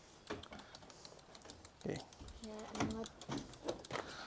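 Quick, irregular light clicks and taps as a goat is lifted out of a wooden crate: its hooves and the crate's wooden slats knocking.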